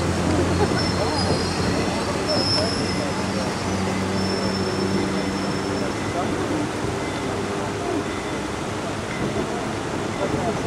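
Steady running noise of a moving passenger train heard from aboard a car: a low, even rumble with a hum underneath.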